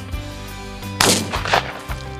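A shotgun shot about a second in, a sharp crack that rings off, then a second, weaker crack about half a second later, over background music.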